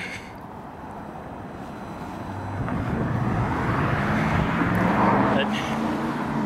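A road vehicle passing close by: engine and tyre noise builds over a few seconds, with a steady low engine hum under it, and is loudest about five seconds in.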